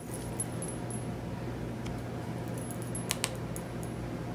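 Plastic buttons on a TV remote clicking under a thumb: one click about half a second in, then two quick, louder clicks a little after three seconds, over a steady low hum.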